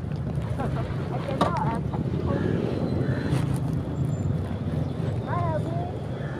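Motorcycle engine idling with a steady low rumble, with wind buffeting the microphone.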